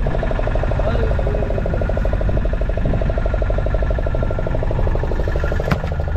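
Fishing boat's engine running steadily with a fast, even pulse. A single sharp knock sounds near the end.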